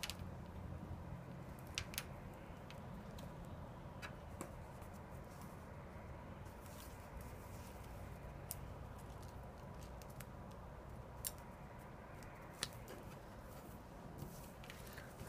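Faint handling sounds of copper tape being unrolled and pressed onto a paper template: scattered small clicks and crinkles, a few every couple of seconds, over a faint steady low hum.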